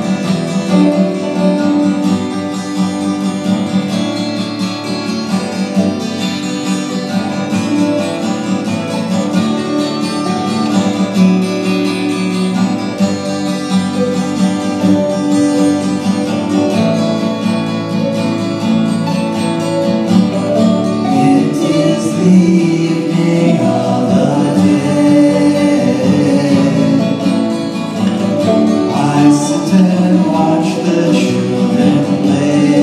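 A live folk band playing: strummed acoustic guitar with mandolin and a bass line. The music runs without a break.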